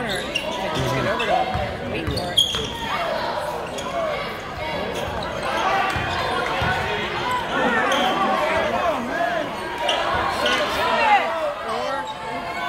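A college basketball game heard from the stands of a large gym: a basketball bouncing on the hardwood court amid players' and spectators' voices, echoing in the hall, with sharp knocks about two and a half seconds in and again near the end.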